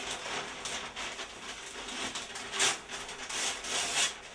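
Newspaper rustling and crinkling as the pages are handled and crumpled, with louder crackles about two and a half seconds in and again near the end.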